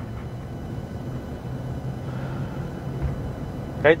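Steady engine and road noise inside a pickup truck's cabin, cruising at about 40 mph on a paved road.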